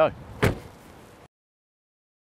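Liftback tailgate of a Holden ZB Commodore pulled down by hand and shut with a single thud about half a second in.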